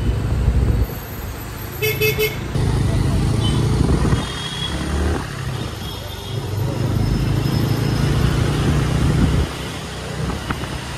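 Bajaj Avenger 220 Cruise's single-cylinder engine running under way in city traffic, its low rumble easing off and picking up again several times as the throttle changes. A vehicle horn toots briefly about two seconds in.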